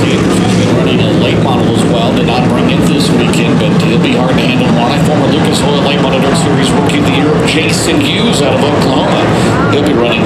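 Dirt late model race cars' V8 engines running around the track at a steady pace, with indistinct voices over them.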